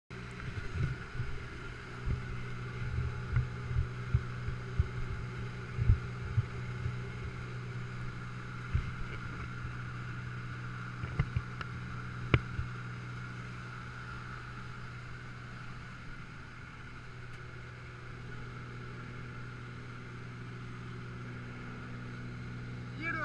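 Small aircraft's engine and propeller droning steadily, heard from inside the cabin. Scattered sharp knocks and bumps come over it during the first half or so.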